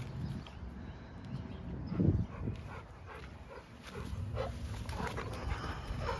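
Two large dogs playing tug of war, with a short loud dog vocalisation about two seconds in and a few fainter dog sounds later.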